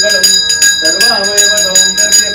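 Puja hand bell rung rapidly and continuously during an aarti, its strikes running into one steady ringing, with a man chanting under it.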